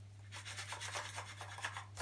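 Faint rustling and rubbing of snack and noodle packaging being handled: a quick string of small scratchy crinkles.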